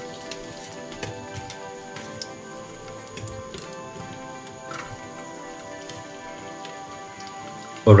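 Ginger and garlic crackling faintly as they fry in hot ghee and oil in a pressure cooker, under steady background music.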